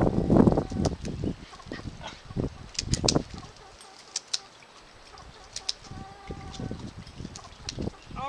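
A hen's flight feathers being clipped with scissors. There is a loud burst of flapping and scuffling as she struggles at the start, then a few sharp snips of the blades about three seconds in, with the hen clucking.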